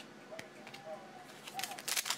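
Trading cards being handled by hand: soft clicks and slides of card stock, with a quick run of sharper clicks near the end as the next cards are flipped.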